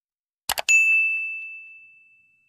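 Two quick clicks, then a single bright bell ding on one clear high note that fades away over about a second and a half: a click-and-notification-bell sound effect.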